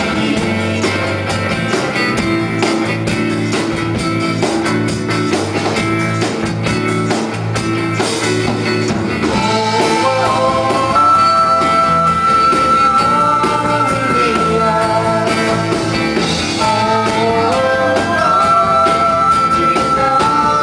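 Live folk-rock band playing an instrumental passage, with strummed acoustic guitar and percussion. About halfway through, a flute melody comes in and holds long high notes.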